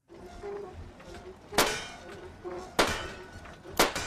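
Three gunshots from a shooting-gallery game, about a second apart; every shot misses its target.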